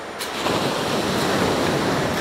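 Ocean surf washing onto a sandy beach: a wave's rush swells up about half a second in and then holds as a steady roar of water, after a faint click at the very start.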